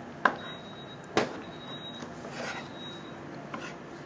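A chef's knife knocking on a cutting board as black olives are chopped: two sharp strokes about a second apart.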